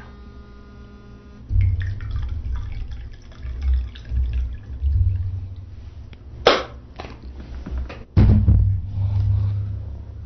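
A man laughing softly close to a microphone, with uneven low breath puffs on the mic and a sharp breath about six and a half seconds in and again about eight seconds in.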